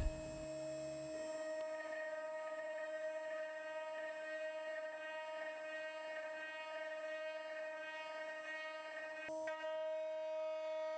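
CNC router spindle running with a steady high whine while a half-inch end mill cuts into the wooden hammerhead handle, surfacing its bottom and milling a round mortise for the cane shaft.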